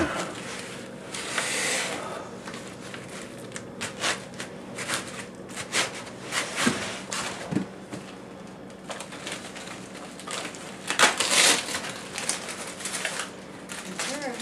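Plastic packaging bag crinkling and rustling and foam packing scraping as an all-in-one computer is worked out of its box, with bursts of louder rustling about a second in and again near the end.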